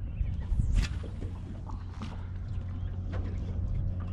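Steady low hum of a small fishing boat's motor, with light water and wind noise and two short, sharp sounds about one and two seconds in.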